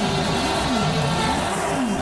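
Race car engine sound effect, a steady run of repeated falling-then-rising pitch swoops, over background music.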